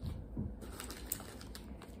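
Quiet handling of plastic wax-melt packaging, with faint crinkles, light clicks and a soft thump or two.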